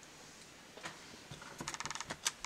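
Faint clicks and taps of tarot cards being handled and picked up off a wooden desk, a few sharp ticks from about a second in that come quicker near the end.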